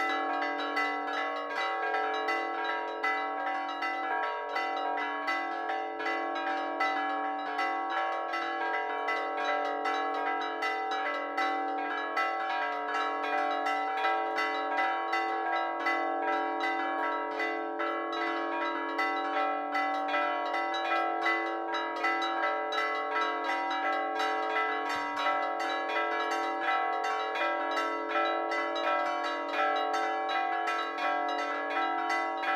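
A solemn peal of four church bells tuned to B, A-flat, E and D, all ringing together in rapid, overlapping strikes that build into a continuous ringing wash.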